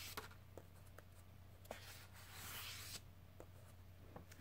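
Faint paper rustling of fingers sliding over the glossy pages of an open book, with a few tiny ticks.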